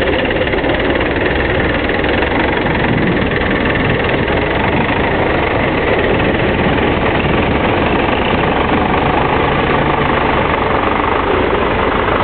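Diesel tractor engine running steadily and evenly, with no revving, from a Belarus MTZ-82.1 loader tractor.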